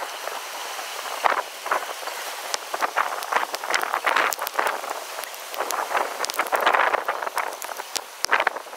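Storm wind rushing through trees in uneven gusts, swelling loudest about six to seven seconds in, with many sharp crackles scattered throughout.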